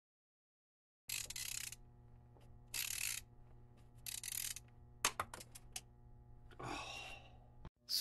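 Faint breaths and small clicks over a low steady hum: about a second in, three short bursts of breathy hiss, a few light clicks about five seconds in, and a longer breath near the end.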